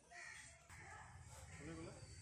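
Faint outdoor street ambience with a bird calling and distant voices over a low steady hum.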